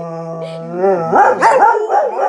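Dog howling: one long, steady howl, then from about a second in a run of quicker, wavering yips and howls. Pretty loud, and the sound of an unhappy dog.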